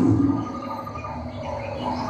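A recorded lion roar played from an animatronic lion display, loud and low at first and dropping off about a third of a second in, followed by quieter recorded animal sounds.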